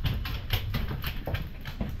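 A German shorthaired pointer's long toenails clicking on a hardwood floor as it runs, a quick uneven patter of clicks. The clicking is the sign that the nails have grown too long and need trimming.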